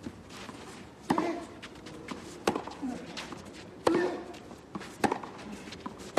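Tennis rally on a clay court: four racket strikes on the ball, about one every 1.3 s, alternating between the two players. Every other strike comes with a short grunt from the hitter.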